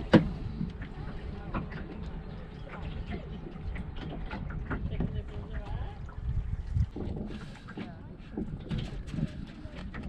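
Water lapping and splashing irregularly against a Wanderer sailing dinghy's hull as it sails, with a low rumble of wind on the microphone and faint voices.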